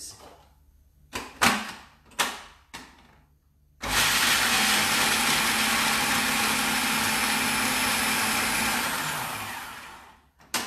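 A few short plastic clicks and knocks as the food processor is set up. Then, about four seconds in, its motor starts and runs loud and steady for about five seconds, blitzing pecans and pine nuts, and winds down near the end.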